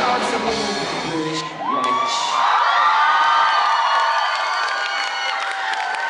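Electric-guitar rock band playing its last notes, which stop about a second and a half in; then the concert crowd cheers, whoops and shouts.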